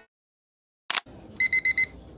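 About a second in, a sharp click, then a digital alarm clock beeps four times in quick succession with short, high-pitched beeps.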